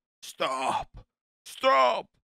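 A man's voice saying "stop" twice, about a second apart; the first is breathier.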